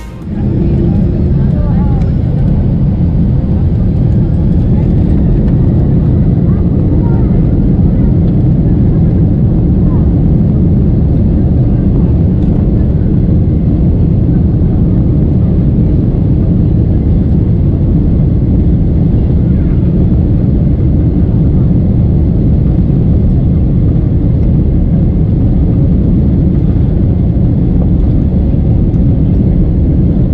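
Cabin noise of a Boeing 767-300ER on the ground, heard from a seat over the wing: a loud, steady, low rumble of the jet engines and the aircraft rolling. It swells over the first second or two and then holds level.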